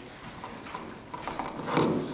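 Footsteps and shuffling on a stage, a scatter of light knocks and scuffs, louder near the end.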